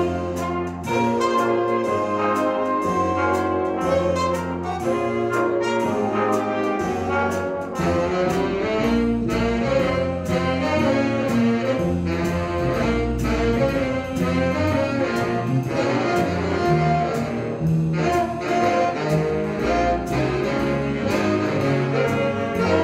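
Jazz band playing an instrumental passage: saxophones and brass over upright bass and drums, with a steady swing beat.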